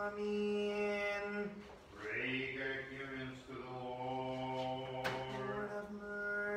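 Slow Orthodox liturgical chant sung in long held notes. The pitch drops to a lower note about two seconds in and is then held.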